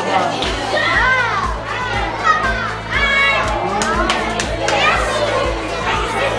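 Young children cheering and shouting in high voices, over a pop song with a steady drum beat of about two beats a second.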